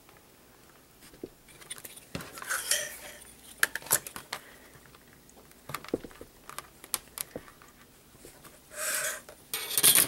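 Paper rustling with scattered light metallic clicks and taps as a metal ruler presses staple prongs flat against a folded paper signature, ending in a louder metal clack as the ruler is lifted and the binder clips are handled.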